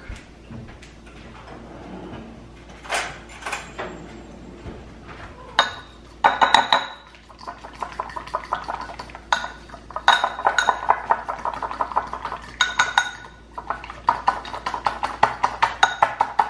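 Metal fork whisking egg with honey and garlic in a small ceramic bowl: rapid clinking of the tines against the bowl in three spells, starting about five seconds in. A few scattered clicks and knocks come before.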